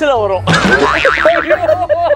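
A cartoon-style comedy sound effect whose pitch slides steeply down, followed from about half a second in by rapid, rhythmic laughter.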